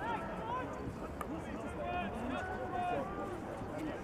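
Distant, indistinct calls and shouts of players across an outdoor hockey pitch over steady ambient noise, with one sharp click about a second in.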